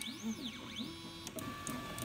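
Ultimaker 3 3D printer's stepper motors moving the print head while it prepares to print: two whines that rise and fall in pitch as the head speeds up and slows down, then several steady tones during a move at constant speed.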